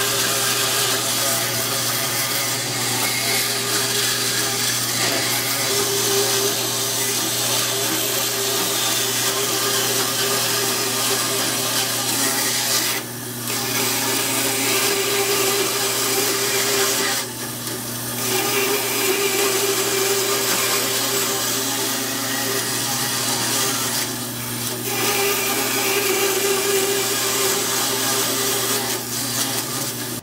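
Bandsaw running, its blade cutting a series of notches into an oak block. There is a steady motor hum under the cutting noise, which eases briefly three times between cuts.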